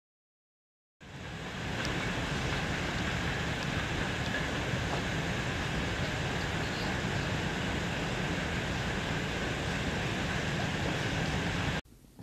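Steady rushing noise with a low rumble, starting about a second in after silence and cutting off abruptly just before the end.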